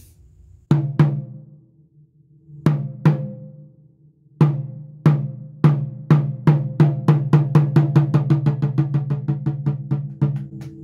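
Buk, a Korean barrel drum, struck with a wooden stick, giving low, ringing booms: two strokes, a pause, two more, then a run of strokes that speeds up into a fast roll. In samulnori the buk's sound stands for the movement of clouds.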